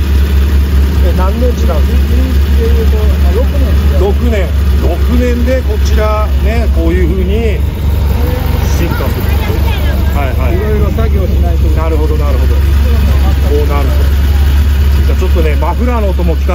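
Isuzu Piazza's G200 DOHC four-cylinder engine idling steadily and evenly, a constant low drone, with people talking in the background.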